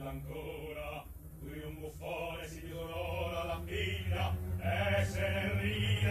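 Operatic singing over sustained low accompaniment, growing louder toward the end.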